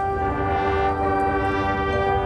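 High school marching band's brass and winds holding a long sustained chord.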